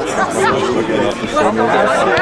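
Several voices talking and calling over one another: chatter from the people at a football match.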